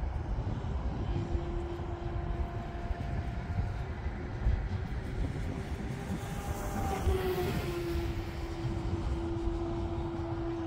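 Electric motor and propeller of an E-flite Carbon-Z Yak 54 RC plane flying overhead: a steady hum that rises briefly in pitch about seven seconds in, then settles back. A low wind rumble on the microphone runs underneath.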